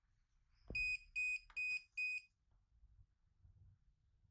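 Ecovacs Deebot Slim DA60 robot vacuum sounding four short, evenly spaced electronic beeps, just after a soft knock, as it sits on its charging base. This is its error signal, which points to blocked brushes or a failing battery; with the brushes found clear, the owner puts it down to the battery.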